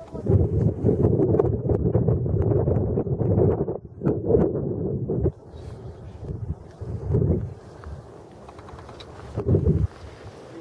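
Wind buffeting the camera microphone in gusts: a long rumbling stretch for the first five seconds, then shorter gusts about seven seconds in and again near the end.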